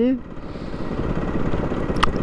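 Aprilia RS 125's single-cylinder four-stroke engine running steadily, with road and wind noise, as the bike rolls slowly along.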